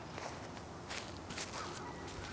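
A few soft footsteps on a dry grass lawn.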